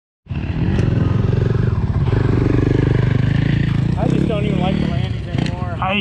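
Dirt bike engine running at low revs, its pitch wandering slightly up and down. Voices come in over it about four seconds in.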